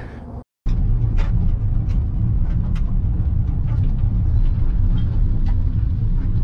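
Inside a car in a rainstorm: a loud, steady low rumble that starts abruptly about half a second in, with scattered light ticks of rain striking the glass.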